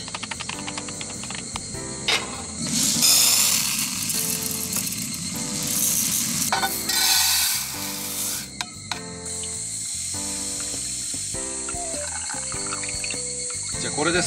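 Background music playing a simple melody of steady notes, with a stretch of hissing, splashing noise in the middle few seconds.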